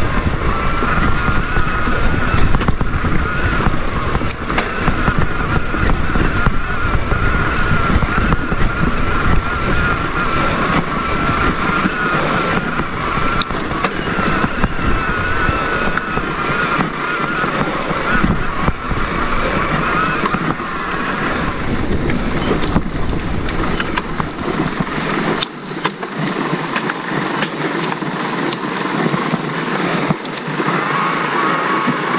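Mountain bike rolling over a dirt forest trail, with rumbling wind buffeting on a helmet camera, scattered rattles and clicks from the bike, and a steady, wavering high whine through most of the ride that fades in the last few seconds.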